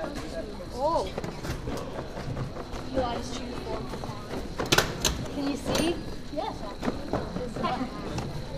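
Indistinct voices and chatter, with two sharp knocks close together about halfway through.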